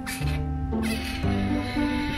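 Pet otter crying in two short bursts, one at the start and a longer one about a second in, over background music.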